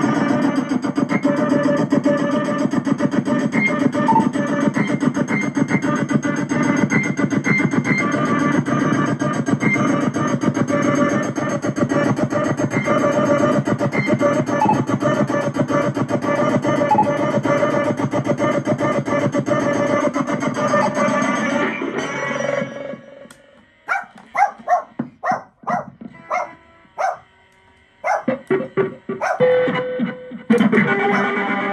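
Circuit-bent Casio SK-1 sampling keyboard, amplified, playing a dense, continuous electronic noise texture with a low drone under it. A little over 20 seconds in it cuts out, leaving short stuttering glitchy bursts with gaps between them.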